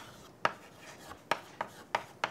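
Chalk writing on a blackboard: about four sharp taps at uneven spacing, with faint scratching strokes between them as letters are written.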